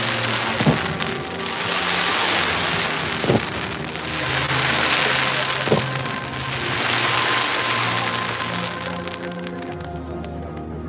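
Fireworks shells bursting: three sharp bangs a couple of seconds apart, and a dense crackling hiss that swells and fades in waves as the stars burn out. Music with long held low notes plays underneath.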